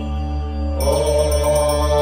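Sanskrit devotional hymn (stotram) sung by a woman over a steady low drone; the voice comes in on a new line about a second in.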